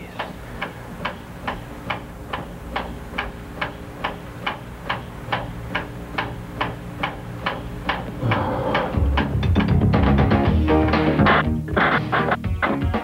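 Title-sequence music: a steady clock-like ticking, about two and a half ticks a second, over held tones, breaking into louder, fuller music with a strong bass about eight seconds in.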